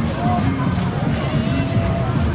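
Many voices talking and calling over one another, with faint paddle splashes in a steady rhythm of roughly one every 0.7 seconds.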